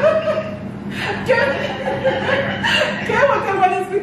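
A woman chuckling and laughing over talk in which no words can be made out.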